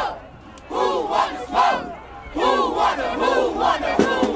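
A group of voices shouting a chant together in two phrases, the first starting about a second in and the second about halfway through.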